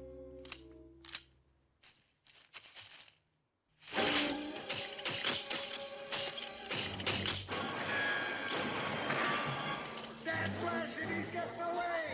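Film soundtrack: tense held orchestral notes and a few sharp clicks, a moment of silence, then loud, frantic orchestral music from about four seconds in over a rapid run of metal snaps from steel leg-hold traps springing shut.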